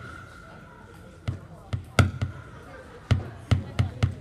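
Live electronic noise music from homemade circuits played through a mixer and PA: irregular, sharp thumping clicks over a faint steady high tone. There is a gap of about a second before the thumps come back, and they grow denser near the end.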